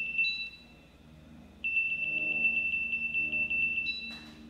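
A high-pitched electronic tone, steady for about half a second, then after a short pause the same tone comes back rapidly pulsing for about two seconds.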